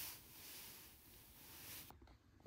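Near silence: faint room tone with a soft hiss.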